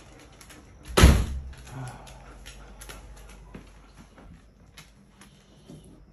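A single loud bang about a second in, with a short ringing tail, followed by scattered light clicks and taps.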